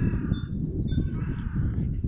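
A crow cawing twice, about a second apart, over a steady low rumble.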